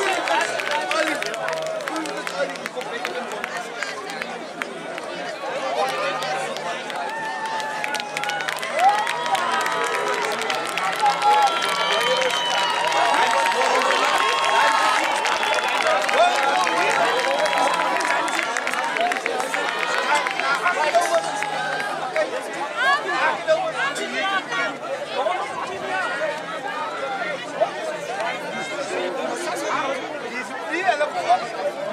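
Crowd of rugby spectators talking and shouting over one another, with no single voice clear, growing a little louder in the middle.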